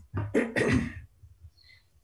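Several voices saying "aye" at once in a voice vote, overlapping into one rough, blurred burst over a video-call connection in the first second.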